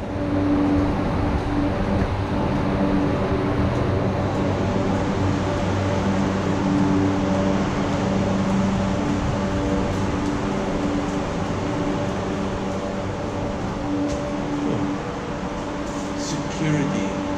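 Steady machinery hum with several low, level tones, running unbroken and fairly loud.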